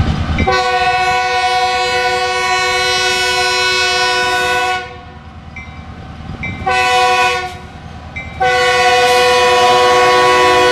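Diesel locomotive's air horn blowing a long blast, a short one and another long one, several notes at once, as it approaches a road crossing, with the low rumble of the engine underneath before and between the blasts.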